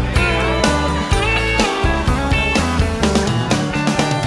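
Instrumental country music from a band, with no singing: guitar lines sliding over a steady bass and drum beat.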